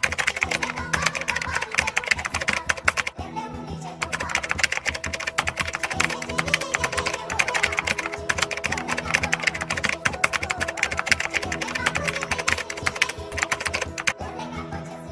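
Rapid keyboard typing clicks, matching on-screen text being typed out, over background music with sustained chords. The typing pauses briefly about three seconds in.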